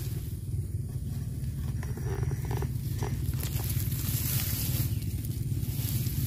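A steady low rumble with light rustling and handling noise from brushing through wet grass.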